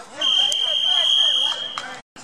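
A loud, high steady tone, like a whistle or an electronic beep, held for about a second and a half, with people talking underneath.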